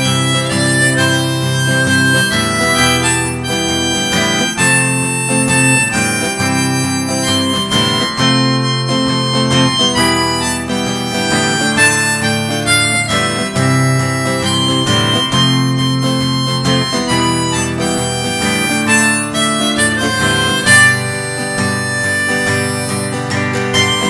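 Harmonica in a neck rack playing an instrumental solo of held, wailing notes over strummed acoustic guitar and electric guitar accompaniment.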